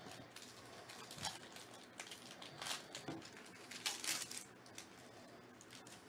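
Foil wrapper of a trading-card pack crinkling and tearing open in several short crackly bursts, loudest a few seconds in, as the cards are pulled out.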